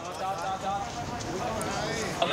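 Footsteps of a crowd of people walking together on hard ground, under overlapping voices.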